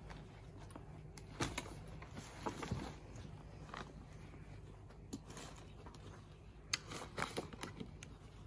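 A Bushbuck Destroyer hunting pack being taken off and handled: fabric and strap rustling with scattered sharp clicks and knocks from its buckles and frame.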